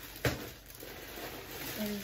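A sharp knock or click, then plastic packaging rustling and crinkling as the high chair's wrapped parts are handled.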